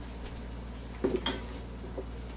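A quick clatter of about three light knocks a little after a second in, like a hard object being handled and set down, over a steady low room hum.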